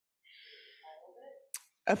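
A woman's soft sigh, breathed out for about a second, followed by a short click and the start of a laugh just before the end.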